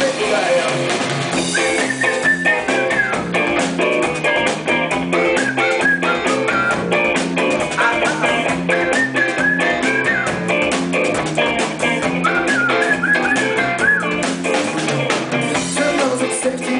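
Live rock band playing an instrumental passage on electric guitars, bass and drum kit. A lead guitar melody with bent notes rides over a steady drum beat.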